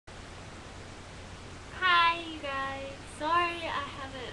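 A teenage girl's voice drawing out three high, held syllables in a sing-song way, starting about two seconds in, over a steady low hum.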